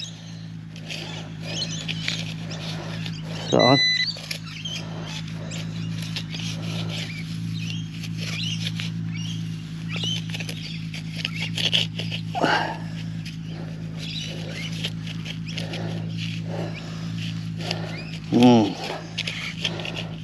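Hand digging in wet, claggy soil: a digging knife cutting and scraping through mud and grass roots, with soil crumbled by hand in many short scrapes. A steady low hum runs underneath, and a brief electronic beep sounds about four seconds in.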